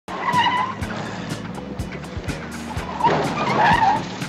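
Car tyres squealing as a police sedan takes a corner: a short squeal near the start and a longer one in the last second. Under it runs soundtrack music with a steady drum beat.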